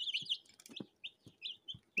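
Young domestic chicken chicks peeping: a quick run of short, high, falling cheeps that thins out about halfway through, with a few faint ticks.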